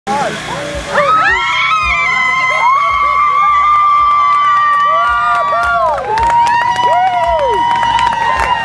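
A woman screaming in surprise and excitement, in two long high-pitched held screams: the first starts about a second in and lasts nearly five seconds, the second begins about six seconds in. Crowd voices and cheering run underneath.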